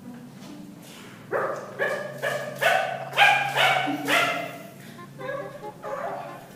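A quick run of about seven short, high yapping barks from a small dog, between about one and four and a half seconds in, with a few fainter yaps near the end, over a low steady hum.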